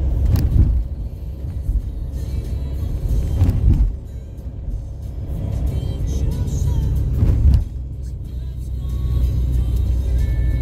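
A car driving along a street, heard from inside: a steady low engine and road rumble with music playing over it. The noise rises briefly three times, about a second in, near three and a half seconds and near seven and a half seconds.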